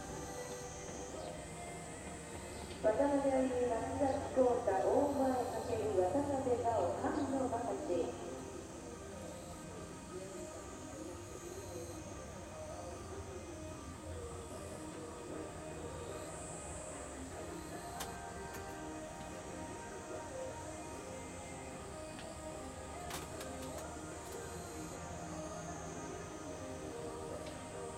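An indistinct voice with music behind it, loudest for about five seconds starting some three seconds in, then carrying on more faintly.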